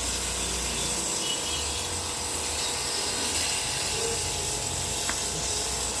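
Pressure washer running steadily, its water jet spraying onto an air conditioner's metal coil and chassis.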